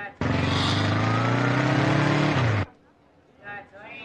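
Motorcycle engine running under acceleration, its pitch rising gently for about two seconds, then dropping as the sound cuts off abruptly. A few brief spoken words follow near the end.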